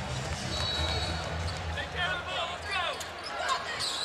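Basketball shoes squeaking on a hardwood court in several short, sharp chirps about halfway through, as players cut and jostle to get open, over a steady arena crowd rumble.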